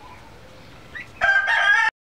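A rooster crowing, starting loud about a second and a quarter in and cut off suddenly after well under a second.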